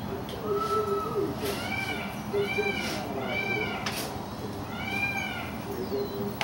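Peafowl calling: a run of short rising-and-falling calls about half a second apart, then one more after a pause.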